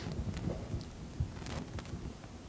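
Low rumbling thumps and a few short clicks from a laptop being worked on a lectern: keys and trackpad tapped, with the knocks carried through the lectern into its microphone.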